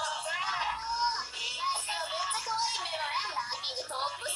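Music with singing and voices, played through a television's speaker in a room, so it sounds thin with little bass.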